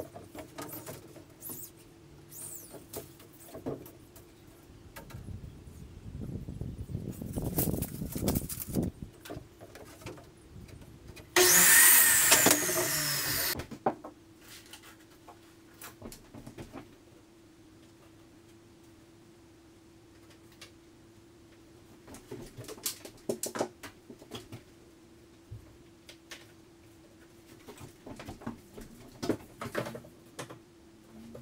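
Chop saw with a fine trim blade making one cut through trim: a loud burst of about two seconds that cuts off suddenly. Scattered knocks and handling noises come before and after it.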